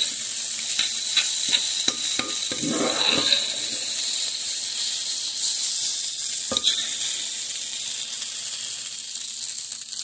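Brown rice and scrambled egg sizzling in a hot skillet, stirred with a slotted metal spoon. The spoon scrapes and knocks against the pan several times in the first three seconds and once more past six seconds.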